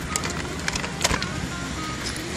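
Plastic shopping bag and backpack being handled in a car boot: light rustling with a few short clicks and knocks, over a steady background noise.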